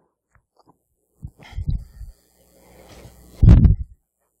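Muffled low thumps and bumps of microphone handling noise: a first cluster of soft knocks, then a louder burst of thuds near the end.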